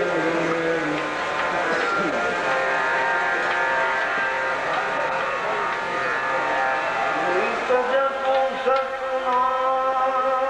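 Harmonium sounding steady held reed chords under a man's voice singing a devotional bhajan in long, sliding notes, with a change of note near the end.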